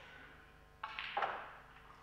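Snooker cue striking the cue ball, with a second knock of the ball a moment later, both dying away in the room.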